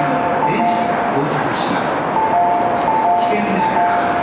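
Station platform warning chime sounding a repeated two-tone high-low pattern in short runs, over the steady running noise of an Osaka Monorail 1000 series train arriving at the platform.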